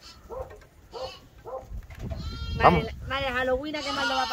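Lambs bleating: a few faint short calls, then two louder, long wavering bleats in the second half.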